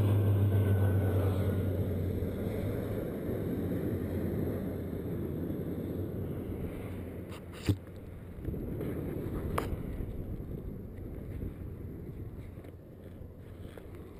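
Wind buffeting the microphone of a helmet camera during a descent under an open parachute canopy, a steady rush that slowly eases. A low hum fades out over the first few seconds, and there is a sharp click about halfway through.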